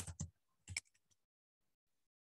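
A few computer keyboard keystrokes clicking in the first second, picked up over a video call.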